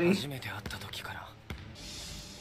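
Anime episode audio playing quietly: a character's soft spoken line in Japanese with background music under it, and a short click about halfway through.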